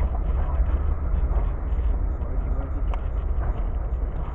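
Steady low rumble of the freight train moving away, picked up by a small camera lying on the rail ties.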